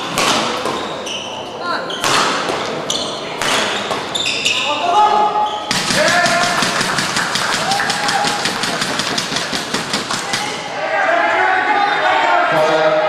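Badminton rally in a large hall: sharp racket strikes on the shuttlecock, some with shoe squeaks on the court. About six seconds in the rally ends and fast clapping and shouting voices take over.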